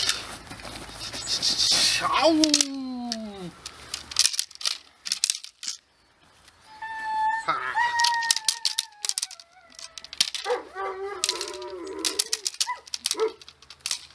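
A Dobermann puppy tugging and scuffling on a rag tug toy held by a handler, with short scuffs and rustles throughout. Brief human exclamations come in between, and a long high-pitched cry that slowly falls in pitch is heard about seven seconds in.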